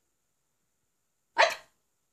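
A dog barks once, a single short, loud bark about a second and a half in.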